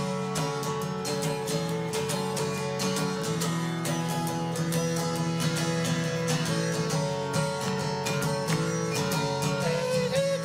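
Solo acoustic-electric guitar strumming chords in an even rhythm, the instrumental close of a song with no singing.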